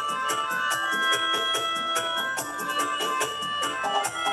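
Melodica playing a melody of held, organ-like notes over a dub reggae backing, with a fast steady high-pitched tick and a low bass line.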